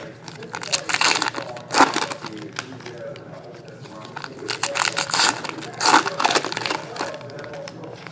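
Foil trading-card pack wrappers crinkling and tearing as packs are handled and opened by hand, in short irregular bursts of rustling with a faint voice underneath.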